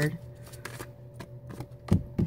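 A deck of tarot cards being shuffled by hand: scattered light flicks and clicks of cards sliding against each other, with a louder thump near the end.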